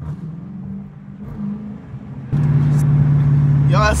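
Dodge Challenger R/T's 5.7-litre Hemi V8 pulling under throttle, heard from inside the cabin. About two seconds in it goes to full throttle and becomes suddenly much louder, holding a strong steady drone with a deep rumble underneath near the end.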